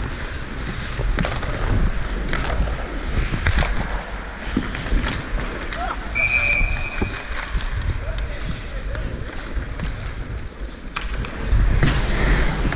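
Wind rumble on a player-worn action camera while skating on ice hockey, with skate blades scraping the ice and sharp clicks of sticks and puck. A brief high tone sounds about six seconds in.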